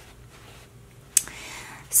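Fabric bag being handled: a single sharp click about a second in, then soft rustling of cloth.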